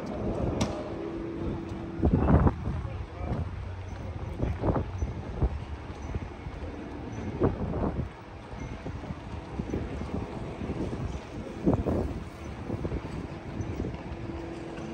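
Outdoor city street ambience: passersby talking in brief snatches over a steady low background hum of the street.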